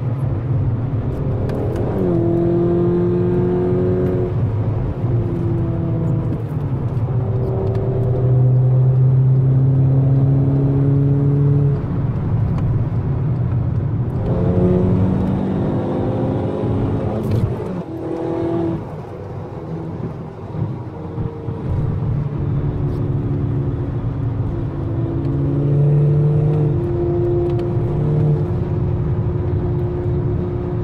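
Engine and road noise inside the cabin of a tuned VW Golf 6 GTI at motorway speed. The engine note holds steady pitches and jumps up or down between them as the revs change, and it drops quieter for a few seconds about two-thirds of the way through.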